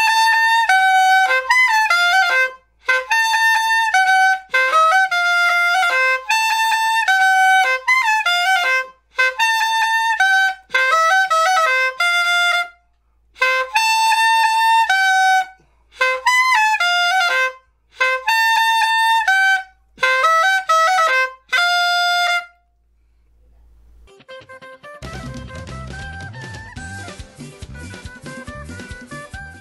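Flauta de millo, the Colombian cane transverse clarinet with a reed cut into its body, played solo: a bright, reedy cumbia melody in short phrases with brief breaks for breath. After a short pause, recorded music with drums begins near the end.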